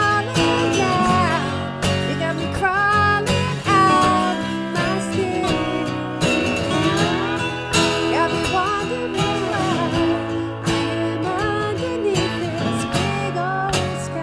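Acoustic guitar strumming with a slide guitar playing a solo of gliding, bending notes over it.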